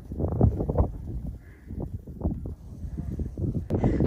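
Wind buffeting the microphone: an uneven low rumble that comes in gusts and eases off around the middle.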